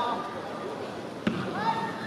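One sharp thump of a soccer ball being kicked, about a second in, from the goalkeeper's kick upfield. Players' shouts are heard around it.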